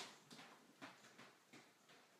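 Near silence with faint footsteps walking away, about two steps a second, growing fainter.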